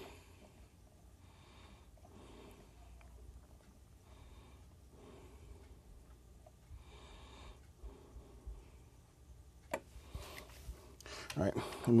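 Faint, quiet room with a person's soft breaths, about five of them over the first eight seconds, and a single sharp click near the end.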